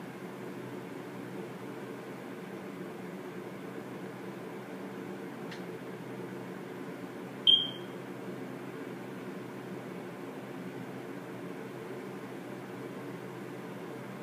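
Steady low background hum, broken once about halfway through by a single short, high-pitched electronic beep. A faint click comes shortly before the beep.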